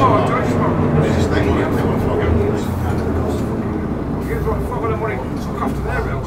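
Leyland Titan double-decker bus's diesel engine running steadily, heard from inside the lower deck, with passengers talking over it.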